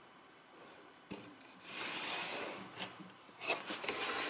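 Light handling of small painted wooden nesting dolls on a table: a click about a second in, a stretch of rubbing, then a few light knocks near the end.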